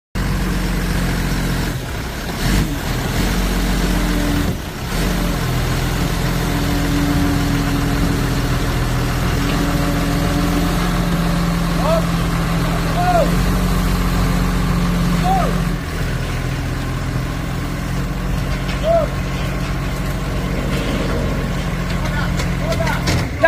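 Forklift engine running steadily under load as it lifts a car on its forks, its note shifting a few times. A few short high squeaks come through over it in the second half.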